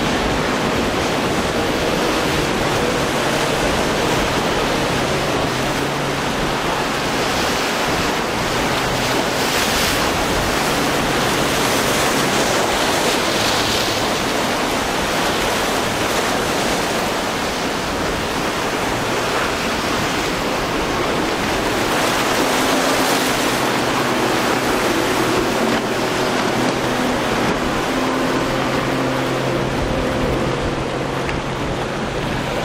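Breaking surf and wind noise on the microphone, steady throughout, with a boat's outboard motor droning faintly underneath, clearer in the second half.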